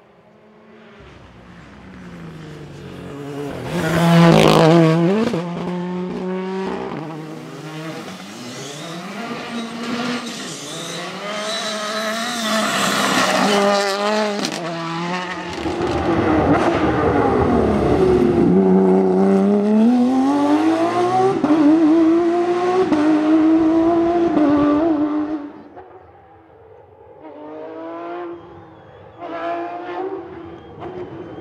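Rally cars driven flat out on a special stage. Their engine notes climb and drop again and again through gear changes and corners, loudest as a car passes about four seconds in and again through the middle stretch. The sound cuts off near the end, and another car's engine starts rising.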